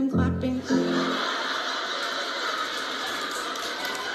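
Held piano chords ring out and stop about a second in. An audience then applauds steadily.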